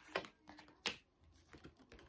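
Playing cards being handled in the hands: a few sharp clicks and taps of card stock as a card is slid out of the deck, the two loudest near the start and just under a second in.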